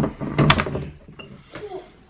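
A door knob is turned and its latch clicks as an interior door is pushed open. The loudest moment is a cluster of clicks with a low thud about half a second in, followed by quieter rustling.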